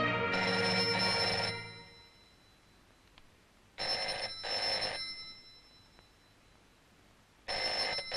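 A telephone ringing with a double ring, twice: the first pair of rings about four seconds in, the second near the end. Film score music fades out in the first two seconds.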